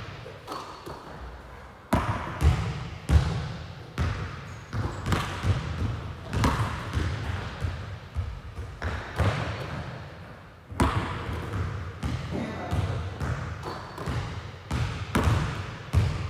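Basketball bouncing on a hard gym floor: a continuous run of sharp, uneven bounces, about two or three a second, each trailing a short echo.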